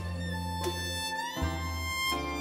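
A baroque ensemble plays an instrumental passage: a violin melody over plucked lute chords and sustained low bass notes from the violone. The violin line slides up to a higher held note a little past halfway.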